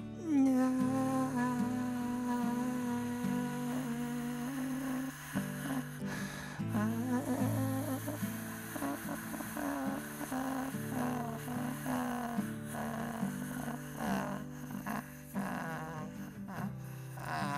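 A man's voice humming long, steady notes, several in a row with short breaks between, over a lower steady tone: a drawn-out meditative hum meant to send out positive energy.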